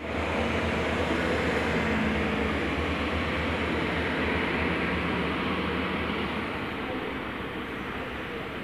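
Red two-car diesel multiple unit (Alstom Coradia LINT) running along the platform track, its diesel engines giving a steady low drone under rail and running noise. The sound slowly fades over the last few seconds.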